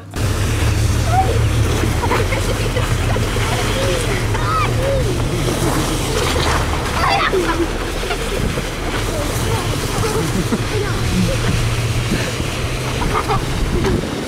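Steady low rumble of a moving vehicle and wind on the microphone, with children's shouts and calls breaking in over it now and then.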